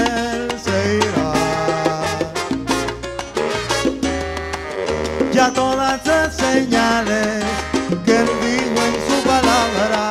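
Live salsa band playing an instrumental passage: a horn section of saxophone, trombone and trumpet over congas and a stepping bass line.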